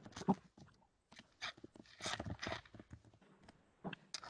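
Irregular clicks, knocks and rustling, with a short rustle near the middle, picked up by an open microphone on a video call.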